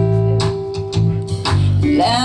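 Live rock band playing between vocal lines: electric guitars holding notes over bass guitar and drums, with drum hits about twice a second.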